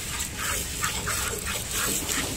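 Hand milking: alternating squirts of milk from a cow's teats hitting frothy milk in a steel bucket. The squirts come in a quick, even rhythm of about three a second.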